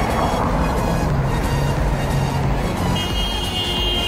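Road traffic: cars driving through a wide intersection, one passing close by, a steady rush of engine and tyre noise, with music playing along.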